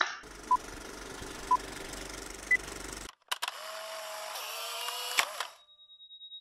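A single hand clap marking the take, then a produced intro sound effect: a steady hiss with three short beeps a second apart, the third one higher, like a countdown. After a brief cut, a couple of seconds of sliding, warbling tones follow, and a thin high steady tone comes in near the end.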